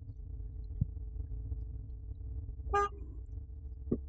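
Steady low rumble of traffic in a car park, with one short car-horn toot about three quarters of the way through and a light click near the end.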